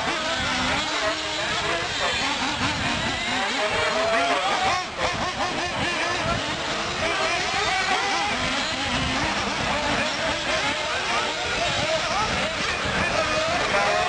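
Several radio-controlled off-road buggies racing together, their motors whining and rising and falling in pitch as the throttle comes on and off.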